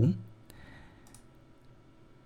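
A man's voice trails off, then a few faint, sharp clicks sound against a quiet room background.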